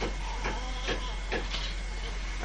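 Steady hiss and low hum of an old analogue video recording, with faint short ticks about every half second.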